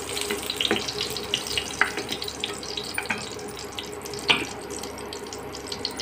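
Leftover hot oil sizzling and crackling in a frying pan, with a few sharp clicks, the loudest about four seconds in.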